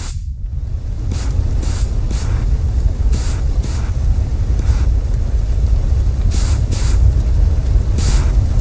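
Dramatic sound-effect rumble, deep and steady and swelling slightly, with irregular short bursts of hiss over it.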